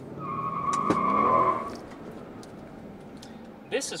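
Tyres squealing through about a second and a half of wheelspin as a Mercedes-Benz SL500 pulls away hard with traction control off, its V8 revving up under the squeal, heard from inside the cabin. After the squeal the engine settles to a steady run.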